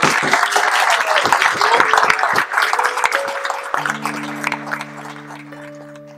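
Audience applause and clapping right after a sung song, fading out gradually over several seconds. About four seconds in, a held chord of low musical notes comes in underneath.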